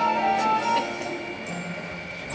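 Instrumental accompaniment for a stage-musical song: held notes that soften about half a second in.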